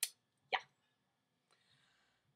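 Two brief lip smacks from the speaker's mouth, about half a second apart.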